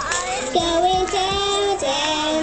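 A young girl singing into a microphone, holding long notes that step up and down in pitch, over a backing track with a steady low beat about twice a second.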